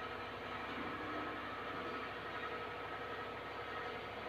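Low, steady background noise with a faint hum: quiet classroom room tone.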